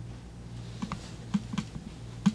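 A few soft clicks and taps, about six of them in the second half, over a steady low hum.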